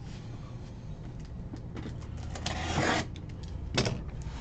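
The plastic wrap of a small cardboard trading-card box being torn open by hand: light rustling and scraping, with a louder tearing rasp lasting most of a second about two and a half seconds in and a short sharp crackle just before the end.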